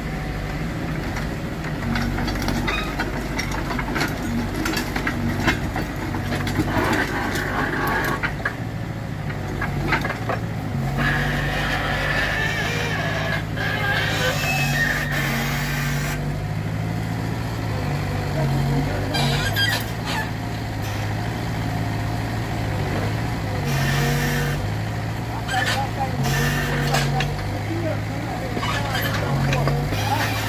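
Mini excavator's diesel engine running, its note stepping up and down as the hydraulics take the load of the log grapple lifting and swinging logs, with a few knocks of logs.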